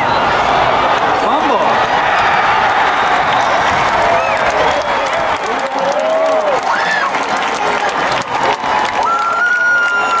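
Stadium crowd cheering and applauding a fumble recovered in the end zone, with individual voices shouting over the din. A steady held tone joins in about nine seconds in.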